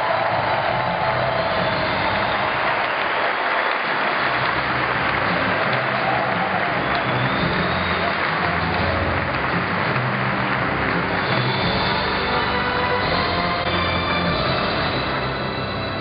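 Audience applauding steadily over music with a repeating bass line.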